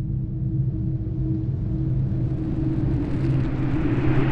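Sound-design drone for an animated zoom: a low, steady rumble with held low tones, under a rushing whoosh that builds steadily in loudness and brightness.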